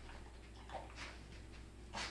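A Doberman sniffing along the floor while searching for a scent: a few short, faint sniffs, the clearest about a second in.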